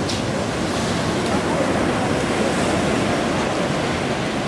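Ocean surf breaking and washing across a flat rock shelf, a steady rushing noise.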